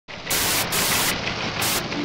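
Loud static hiss, used as a glitch transition sound effect, that flares up sharply three times in about two seconds.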